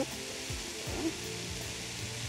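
A spiced fish filling sizzling steadily in a frying pan as it is stirred with a wooden spatula, with soft background music underneath.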